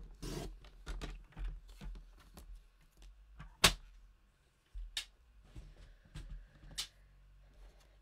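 Paper trimmer and card stock being handled on a craft desk: scattered light clicks, taps and rustles, with one sharp knock about three and a half seconds in and two more, weaker, near five and seven seconds.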